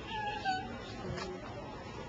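A short, high-pitched cry with a voice-like quality, lasting about half a second near the start and falling slightly in pitch, over the low hum of a quiet room.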